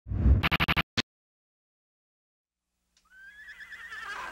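A short loud burst with a deep rumble and a quick run of about six sharp hits, over about a second in. After a silence, a horse starts to whinny near the end: a wavering high neigh.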